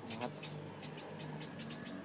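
Short high chirps repeating about seven times a second from a calling animal, over a faint steady low hum.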